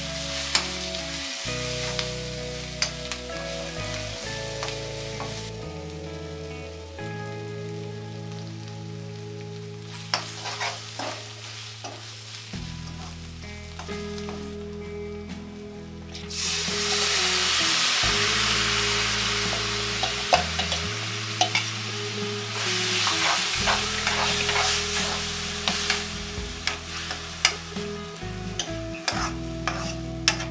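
Oil sizzling in a steel kadai while a steel ladle stirs and scrapes the tempering, with frequent small clicks of metal on metal. About halfway through, soaked chana dal is poured in with its water and the sizzle jumps suddenly to its loudest. It then settles back under more ladle clicks as the dal is stirred.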